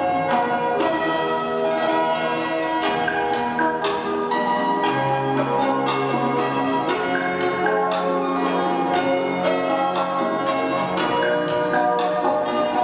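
Music of chiming bells: many struck bell tones at different pitches overlap and ring on, over a low held note.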